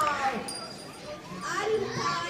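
Many children's voices chattering and calling out at once, high-pitched and overlapping.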